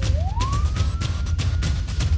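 A police siren wail over intro music with fast drum hits and deep bass: the single siren tone falls, turns within the first half second, rises and levels off high.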